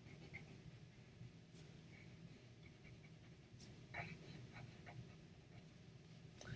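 Near silence: faint scratching of a white coloured pencil colouring on paper, with a few light ticks, over a low steady room hum.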